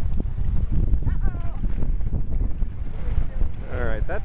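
Wind buffeting the microphone: a steady, fluctuating low rumble. A short, high, wavering voice comes about a second in, and speech starts just before the end.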